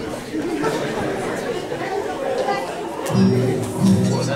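Murmur of voices in a hall, then about three seconds in acoustic guitar chords are strummed twice and ring on: the opening of the song's accompaniment.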